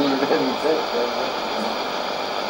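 Shortwave AM broadcast received on a Sony ICF-2001D: a voice speaking softly through a steady hiss of band noise.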